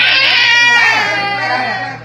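A baby crying loudly in one long, continuous wail that tapers off near the end, while it is held and handled to get out a coin stuck in its throat.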